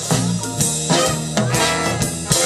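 Swing big band playing live: saxophones and brass over a rhythm section, with a steady swing beat and no singing.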